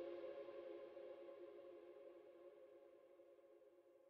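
The last held chord of an electronic pop song fading out, its steady tones growing evenly fainter until it is barely audible.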